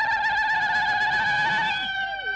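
Women's ululation (zaghrouta): one long, high, wavering trilled note held throughout, with a second voice sliding down in pitch near the end.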